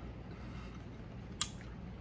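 Quiet room tone with a steady low hum, broken by one short sharp click about one and a half seconds in.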